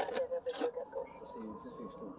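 Low, indistinct voices talking, with a faint steady high tone underneath in the second half.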